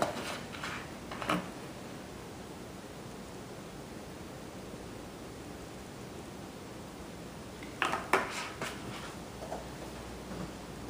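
A low steady hiss, with a few light clicks and knocks about a second in and again near the end: a plastic oil bottle being handled over a steel kadai on a lit gas burner while oil is poured.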